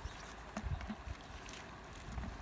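Faint rustling and a few soft knocks from a mesh fish-and-crab trap being lifted and shaken out by hand, with a thin click about one and a half seconds in.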